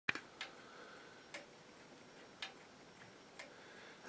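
Faint, even ticking of a handmade longcase clock movement running uncased on a test stand, about one tick a second from its seconds-beating escapement.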